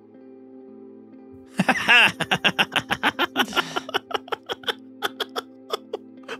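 Steady, soft ambient background music, then about one and a half seconds in several people burst out laughing together, in quick repeated bursts that thin out toward the end.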